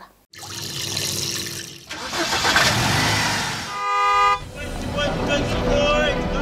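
Street traffic sounds with a single short car horn honk about four seconds in, followed by the start of bumper music.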